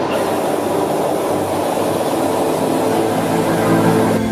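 Friggi STP automatic band saw running, a steady mechanical noise with a high hiss.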